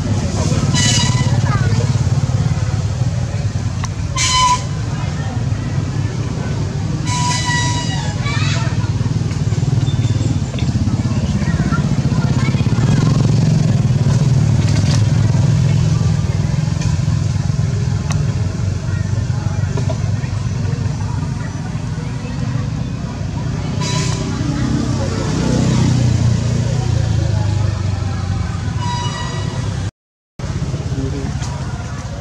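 A steady low motor rumble runs throughout. A few short, high-pitched calls cut through it at intervals.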